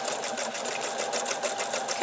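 Pfaff sewing machine running steadily with a candlewicking foot, stitching a candlewicking decorative stitch that goes back over itself several times; the needle strokes make a rapid, even rhythm.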